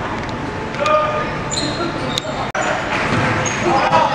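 A basketball bouncing on a gym's hardwood floor, with short high sneaker squeaks and crowd voices echoing in the hall.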